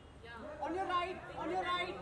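Several people talking at once: chatter of voices.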